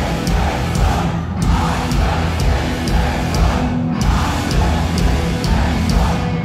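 Hardcore punk band playing live and loud: distorted guitars and bass over driving drums, with cymbal hits about twice a second.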